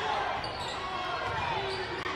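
Basketball game sound in a gymnasium: a basketball being dribbled on the hardwood court under a background of spectator voices.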